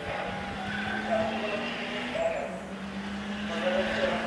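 Race cars on a circuit taking a corner together, engines held at a steady note under load, with short tyre squeals about a second in and again just past two seconds.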